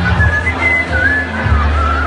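Amplified party music with a deep, pulsing bass line, and a whistled melody sliding up and down above it.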